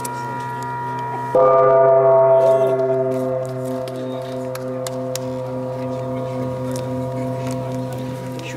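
A large brass gong on a stand is struck once with a mallet about a second in. It rings with several steady tones over the fading ring of an earlier stroke, then dies away slowly, with a low tone pulsing a couple of times a second.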